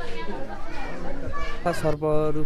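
Children's voices, with children talking and calling out among other visitors' chatter; a louder voice cuts in near the end.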